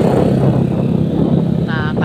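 Motorcycle engine running steadily at low speed, a continuous low hum.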